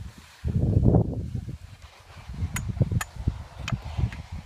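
Wind buffeting the microphone in gusts, a low rumble that comes and goes. A few sharp clicks fall in the second half.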